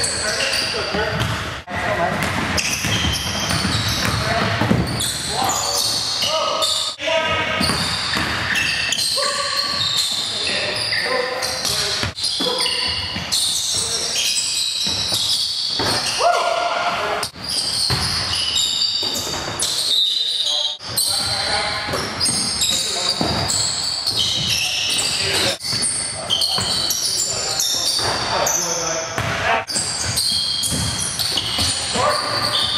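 Live sound of an indoor basketball game: a basketball bouncing on the hardwood court and players' voices, echoing in a large gym.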